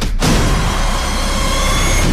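Movie-trailer sound design: a hit just after the start, then a loud, steady low rumble under a faint high ringing tone.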